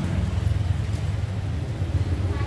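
Steady low rumble of a motor vehicle engine running close by.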